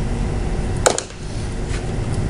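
A single sharp click a little under a second in, with a fainter tick just after, as hose and fittings are handled on the workbench, over a steady low room hum.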